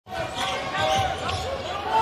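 A basketball being dribbled on a hardwood court, over a murmur of voices in the arena.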